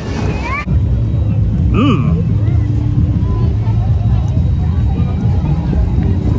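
Wind buffeting the microphone outdoors, a steady low rumble that starts abruptly just under a second in, with one short rising-and-falling vocal sound about two seconds in. Before the rumble, a brief moment of fairground ride sound with voices.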